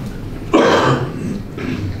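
A person coughs once, a short harsh burst about half a second in.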